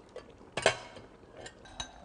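Kitchen crockery and utensils handled on a counter: one sharp clink about two-thirds of a second in, then a few lighter ticks and clinks.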